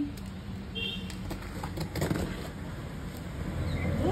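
A screwdriver tip scraping and slicing through packing tape on a cardboard box, with a few short clicks about halfway, over a steady low rumble.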